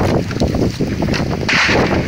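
Wind buffeting the microphone in a heavy, uneven rumble, with short crunching clicks of footsteps on loose stones and gravel.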